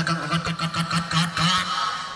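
A man's voice carrying on over outdoor volleyball match noise, with short sharp hits including the slap of a hand serving the ball.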